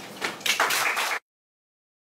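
A few sharp knocks followed by a short, loud rustling clatter, which cuts off abruptly into dead silence just over a second in.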